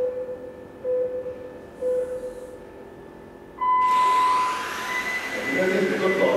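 Race start countdown from a timing system: three short low beeps about a second apart, then a long higher start tone. Right after it, the electric motors of the radio-controlled touring cars whine up in pitch as the field accelerates away from the start.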